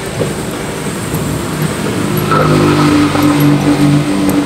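A motor vehicle engine running steadily in the background, over a hiss of noise. About halfway through its steady hum grows louder.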